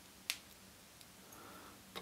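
A quiet room with one sharp, short click a quarter of a second in and a much fainter tick about a second in.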